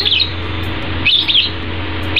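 Bird chirps, a short cluster at the start and another about a second in, over a steady low hum.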